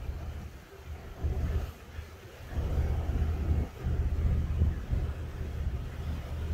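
Boat engines running with a low rumble under wind buffeting the microphone, the level dipping and swelling unevenly.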